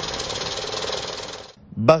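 Electronic banknote counting machine running a stack of Iraqi dinar notes through, a fast even rattle of notes flicking past the rollers that stops about one and a half seconds in.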